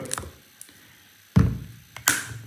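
A single solid knock, an object set down on or bumping a wooden tabletop, about one and a half seconds in, after a few light clicks.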